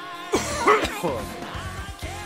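A man gives a short, coughing laugh about half a second in, the loudest sound here, over a progressive rock song with a sung vocal line playing through speakers.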